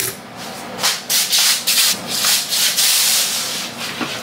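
Loud scraping and rubbing noise in a run of irregular, hissy strokes, starting about a second in and stopping just before the end.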